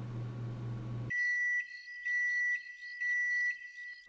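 Microwave oven beeping three times, each beep about half a second long and about a second apart, signalling the end of its heating cycle. The beeps follow about a second of low room hum.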